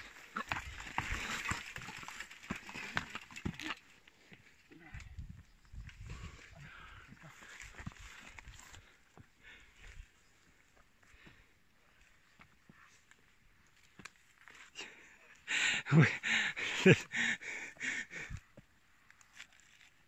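Brush and branches rustling and scraping as mountain bikes are pushed through dense scrub, with scattered clicks and knocks from the bikes. The rustling is loudest in the first few seconds, and a burst of knocks comes near the end.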